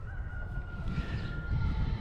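A distant rooster crowing: one long, faint, slightly falling call lasting almost two seconds, over a low rumble of wind on the microphone.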